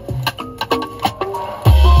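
Music with a percussive beat and melodic notes, played loud through an aftermarket car audio system: an Audio Control LC-6.1200 six-channel amplifier driving Infinity Kappa component speakers, heard inside the truck cab. The volume is being turned up, and a heavy bass hit comes in near the end.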